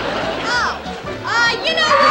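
Studio audience laughter dying away, followed by a few short high-pitched cries that slide up and down in pitch.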